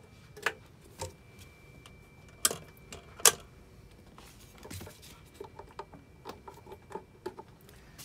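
Scattered clicks and knocks of audio cables and plug connectors being handled and plugged in on a workbench, the sharpest two about two and a half and three seconds in, then a run of small clicks.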